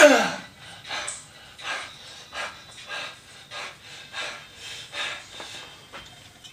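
A man panting hard between reps of a heavy 125 kg barbell back squat. It opens with one loud grunt that falls in pitch as he comes up, then runs on as fast, heavy breaths, about one and a half a second.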